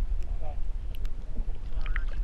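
Wind rumbling on the microphone, with water splashing as a hooked fish thrashes at the surface beside a canoe.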